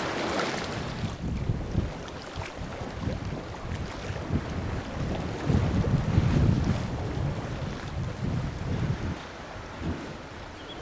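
Wind buffeting the microphone in irregular low gusts, strongest around the middle, over a steady wash of choppy open sea.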